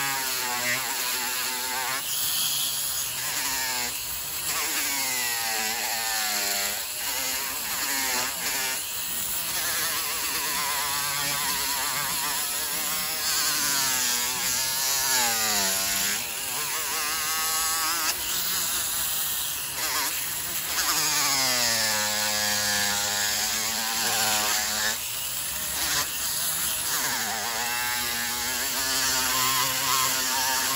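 Handheld rotary tool spinning a yellow abrasive wheel against walrus ivory: a high motor whine over a grinding hiss, its pitch sagging as the piece is pressed in and climbing back as pressure eases, over and over.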